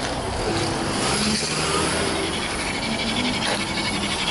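Road traffic on a busy street: cars and a van driving past close by, a steady mix of engine hum and tyre noise.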